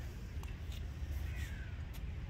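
A few short bird calls, one a falling crow-like caw, over a steady low rumble.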